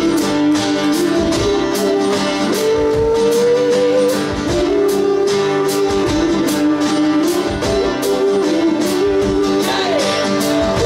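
Live band music: strummed acoustic guitars and a drum kit keeping a steady beat under a held melody line that slides and bends between notes.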